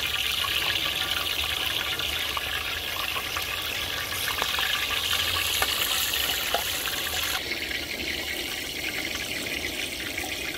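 Hot cooking oil sizzling steadily in wide frying pans, with a few small pops; the sizzle drops a little about seven seconds in.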